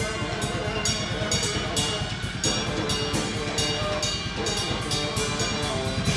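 Live band of saxophone, electric guitar and drum kit playing together. The saxophone holds sustained notes over a dense, busy low end, with cymbal hits about twice a second.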